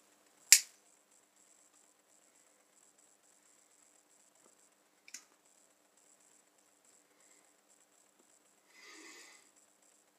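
A pocket lighter clicks as a briar pipe is relit: one sharp, loud click about half a second in and a softer one about five seconds in. Near the end comes a short, soft breathy puff.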